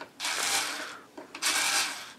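Screwdriver working a screw out of an animatronic's metal head frame, heard as two short rasping, rattling bursts less than a second apart.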